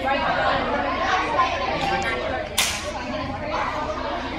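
Many girls' voices chattering at once in a large, echoing gym, with one sharp slap or clap about two and a half seconds in.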